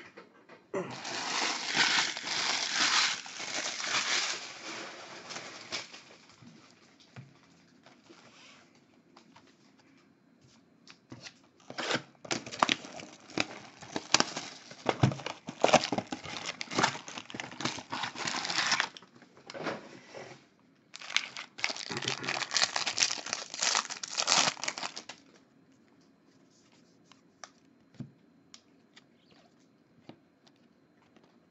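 Plastic wrapping and card packs crinkling and tearing as a sealed trading-card hobby box is unwrapped and opened by hand, in three stretches of crackling a few seconds long with quieter gaps between.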